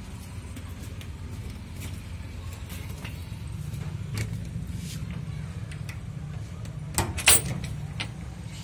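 Two sharp knocks near the end as a hand bumps against a wooden plank door with a chain latch, over a steady low rumble.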